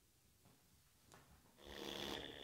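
Near silence, with faint music just beginning near the end.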